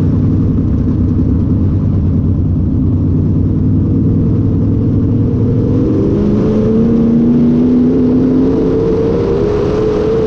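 Sport mod dirt race car's V8 engine heard from inside the cockpit, running steadily at low speed, then rising in pitch from about six seconds in as the car accelerates.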